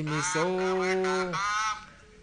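A man's voice stretching the last word of a spoken wish for good fortune into one long, steady held note of about a second.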